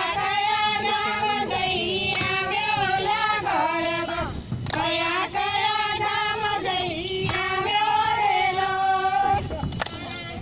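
A high voice singing a garba song in two long phrases with wavering, sliding pitch, broken by a short gap about four and a half seconds in.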